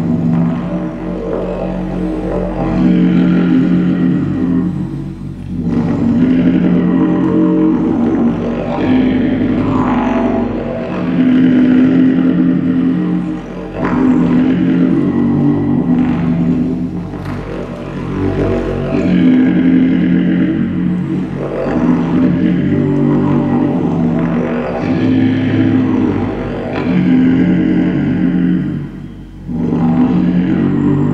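Didgeridoo played as a continuous low drone, its tone shaped into shifting, vowel-like sweeps above the drone. The drone dips briefly a few times, most deeply near the end.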